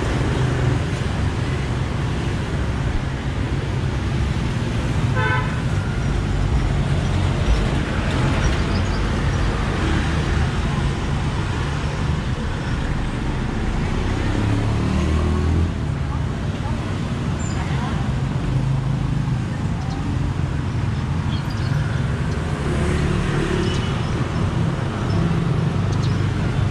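Steady roadside traffic noise of passing motor vehicles, with a short horn toot about five seconds in.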